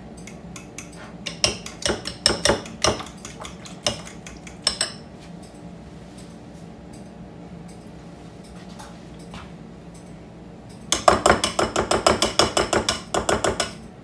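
A whisk or fork stirring applesauce into beaten eggs and brown sugar in a mixing bowl, clinking against the bowl's side. Scattered clinks for the first few seconds, a pause, then quick rhythmic clinking about five times a second near the end.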